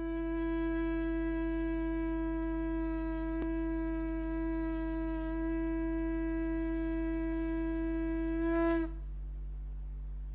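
A wind instrument holding one long, steady note rich in overtones. The note swells briefly near the end and cuts off about nine seconds in. A steady low drone runs beneath it and continues after the note stops.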